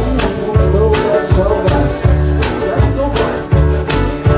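Live acoustic band with acoustic guitar, double bass, banjo and washboard playing an upbeat passage, with a steady beat of about two strokes a second over walking bass notes.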